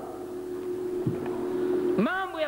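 A steady, flat hum holding one tone, with a single soft low thump about a second in.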